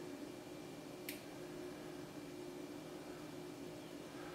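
A single short click about a second in, fishing-line clippers snipping off the tag end of a freshly tied blood knot, over a faint steady hum.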